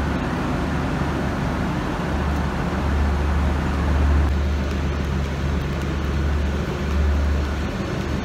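Diesel trains idling at a station platform: a steady low engine drone with a hum under a wash of noise, holding even throughout.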